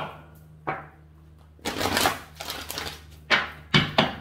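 An oracle card deck being shuffled and handled: a longer rustle of cards about a second and a half in, then a few sharp taps of the cards near the end.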